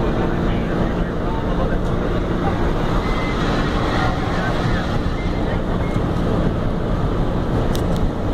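Steady engine and road noise of a vehicle driving along, a constant low rumble with no sudden events.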